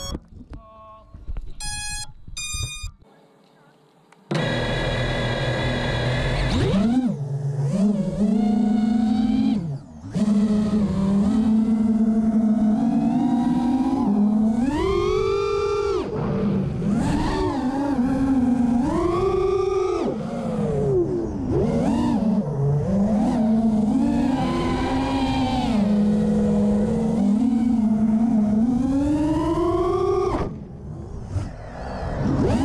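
A few short electronic beeps from the freshly powered FPV quadcopter, then its four Cobra 2207 2450kv brushless motors spin up about four seconds in and whine, the pitch rising and falling steeply with the throttle through freestyle flight, heard close on board.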